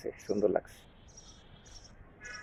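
Short, high-pitched chirps from a small animal, repeating irregularly about every half second over faint outdoor background noise.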